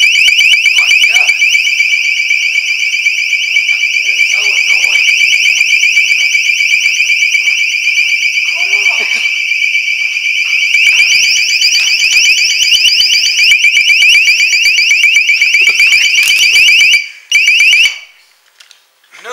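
Loud, high-pitched electronic alarm sounding continuously with a rapid warble, cutting off near the end.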